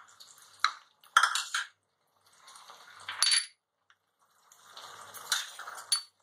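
Wooden spatula stirring chopped vegetables in a non-stick frying pan, with irregular scrapes and knocks against the pan. The loudest strokes come about one and three seconds in.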